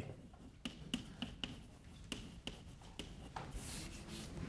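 Chalk writing on a blackboard: a string of faint, sharp taps, with a short soft scrape near the end.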